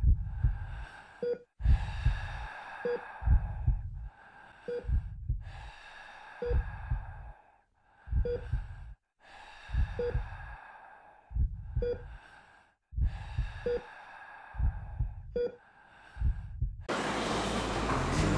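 Laboured, wheezing breaths repeating about every second and three-quarters, each with low heartbeat-like thumps and a short beep, like a patient on a heart monitor. Near the end a louder, steady noise cuts in.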